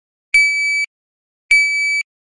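Shot timer beeping twice, each a steady high half-second beep, about 1.2 s apart: the first is the start signal to draw from the holster, the second marks the end of the par time for one dry-fire shot.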